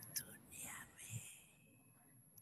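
A faint voice, close to a whisper, murmuring for about a second and a half, then near silence.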